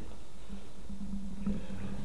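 A steady low hum in a quiet room, with no distinct sound over it.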